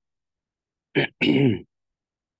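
A man clearing his throat about a second in: a short sharp catch followed by a brief voiced sound.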